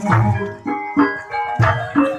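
Javanese gamelan music: struck pitched percussion ringing in a steady beat of about two strokes a second, over low-pitched strokes.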